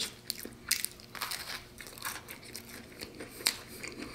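A person chewing a mouthful of cheese-jalapeño cornbread waffle, a run of short, sharp clicks at irregular intervals.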